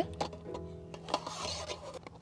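Quiet background music, with a couple of light clicks and a brief rustle as the wire handle on a steel camping pot's lid is flipped up before the lid is lifted.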